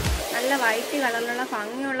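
A woman speaking slowly over a steady hiss that fades out near the end; a background music beat cuts off just after the start.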